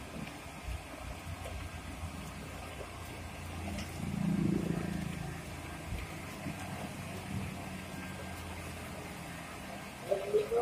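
Daihatsu Gran Max van engine running at low speed as the van creeps forward, with a steady low hum that swells briefly about four seconds in.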